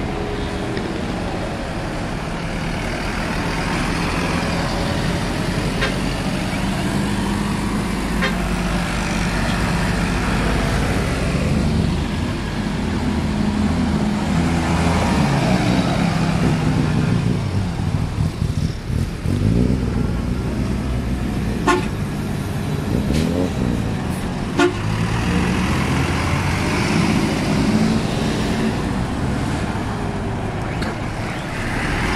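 City buses pulling out one after another, their diesel engines running as they pass close by, with horn toots near the start and near the end. Two sharp snaps come in the second half.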